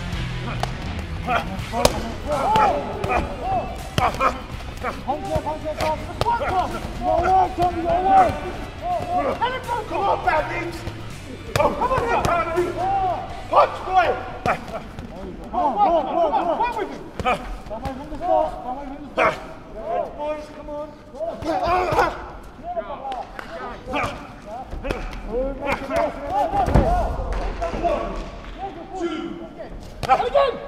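Boxing punches landing as sharp, repeated thuds and slaps, mixed with shouting voices. A bass-heavy music bed fades out over the first several seconds, and a heavy low thud comes near the end.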